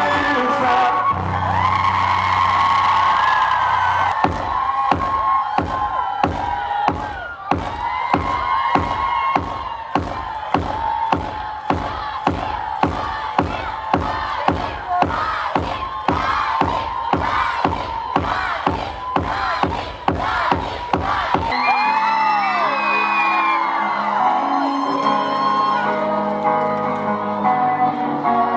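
Live pop music in a concert hall: singing over a steady drum beat of about two beats a second, with whoops from the crowd. Near the end the beat drops out, leaving held keyboard chords.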